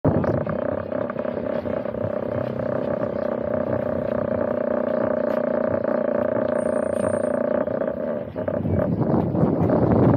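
A steady droning hum with one strong held tone, which cuts off about eight seconds in and gives way to a louder, rougher rushing noise.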